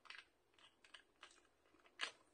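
Near silence with a few faint, scattered clicks of fingernails picking old self-adhesive gems off their backing paper, which the gems are reluctant to leave.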